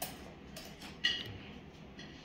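Two light clinks of cutlery on tableware, a faint one at the start and a sharper one about a second in that rings briefly, over a low steady room hum.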